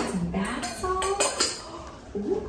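Small metal canisters on a bathroom vanity tray being handled, with a few sharp metallic clinks about a second in.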